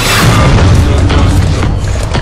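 Film-trailer sound effect of a big explosion booming under loud orchestral-style trailer music, hitting right at the start and rumbling on through the two seconds.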